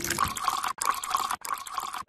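Liquid being poured into open foil juice pouches: a gurgling, splashing pour, broken by two short dropouts.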